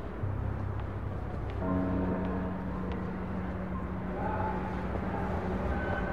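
Background music of sustained held notes over a low rumble; a new set of held tones enters about a second and a half in.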